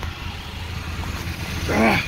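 Saturn Ion's four-cylinder engine idling with a steady low hum, left running so the transmission fluid level can be checked at the check plug.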